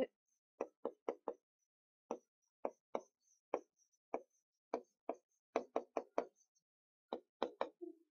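Pen strokes on a writing board as Japanese characters are handwritten: a quick series of short taps, about twenty, in irregular bunches with brief pauses.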